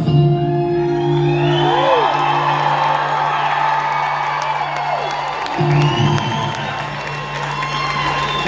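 A live band holds a final chord, strummed again about five and a half seconds in, while the audience cheers and whoops over it at the end of the song.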